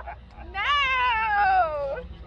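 A person's long, high-pitched vocal note, starting about half a second in and falling slowly in pitch for about a second and a half.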